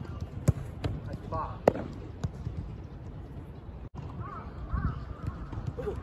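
A football struck hard with a kick about half a second in, then a sharper smack about a second later as the ball meets the goalkeeper, followed by a few lighter knocks of the ball.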